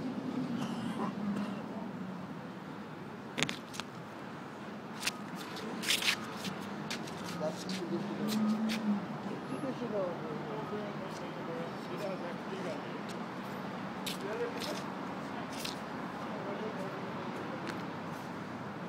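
Busy outdoor transit-station ambience: a steady hum of traffic and background voices, broken by scattered sharp clicks and knocks.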